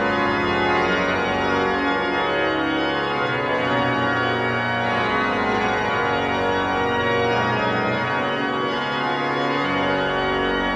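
Pipe organ of St. Stephen's Church (Stevenskerk) in Nijmegen, a three-manual and pedal instrument rebuilt by Flentrop, played with full sustained chords and moving lines at a steady loudness.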